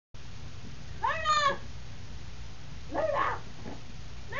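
Puppy whining twice, two short high cries that each rise and fall in pitch, about two seconds apart.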